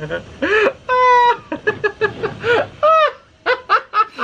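Adults laughing hard and shrieking in a string of high cries that rise and fall, with one held squeal about a second in and short breathless whoops near the end.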